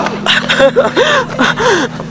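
Breathless laughter from a person: a quick run of about five gasping whoops, each rising and falling in pitch.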